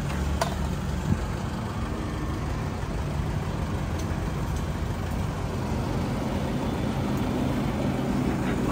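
A vehicle engine idling close by: a steady, low, even hum, with a few faint clicks over it.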